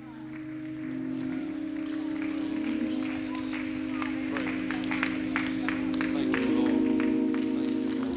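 Sustained keyboard chords held and changing slowly, swelling in volume, under a worshipping congregation, with scattered sharp hand claps from about three seconds in.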